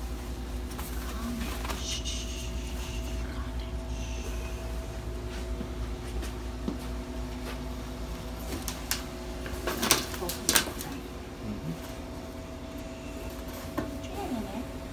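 Steady low equipment hum with a few faint steady tones in a small clinic room, broken about ten seconds in by a quick cluster of sharp clacks of equipment being handled.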